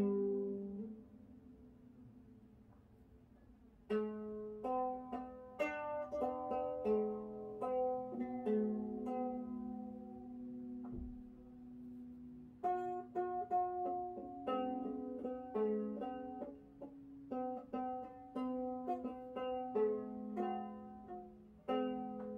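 Plucked string instrument playing a slow melody: one note rings out and fades at the start, then after a pause of about three seconds come two phrases of plucked notes, split by a short break about halfway through.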